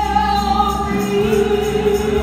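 Gospel vocal group singing in harmony, the voices holding long notes over a steady low accompaniment.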